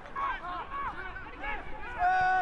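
Faint shouting from players and spectators around an outdoor football pitch during play: a string of short, distant calls.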